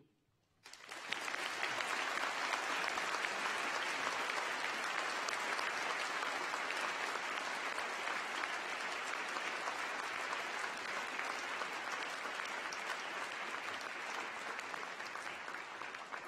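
Large audience applauding, the clapping breaking out about a second in and then holding steady.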